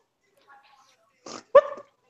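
Mostly quiet, then two short sounds near the end: a brief hiss-like burst, followed at once by a single short, sharp yelp.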